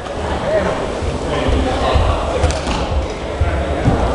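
Indistinct voices in a large hall over repeated low thuds and rumbling.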